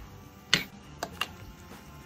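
Metal ladle clinking against the pot and bowl, with clam shells knocking, as clam miso soup is served. One sharp clink about half a second in, then two lighter ones around a second in.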